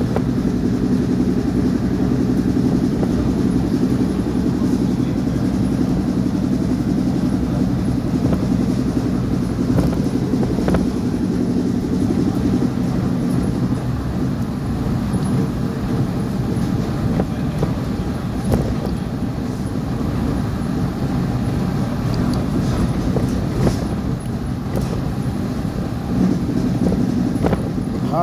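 City bus engine droning steadily under load, heard from inside the cabin, with a few brief knocks and rattles of the body. The rider calls the bus worn out, 'screaming' and in need of care.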